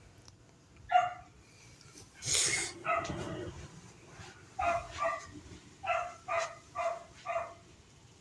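A small dog barking in short, high yaps: one about a second in, then a run of six quick barks in the second half. Between them, around two and a half seconds in, comes a louder, hissy burst of noise.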